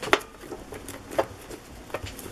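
Stiff paper recipe cards being handled and laid down on a cutting mat: light paper rustling with two sharp taps about a second apart.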